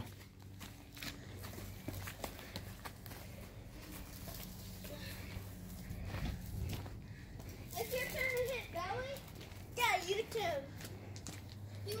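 Faint children's voices calling out at a distance, mostly in the second half, over a low steady hum and a few light clicks.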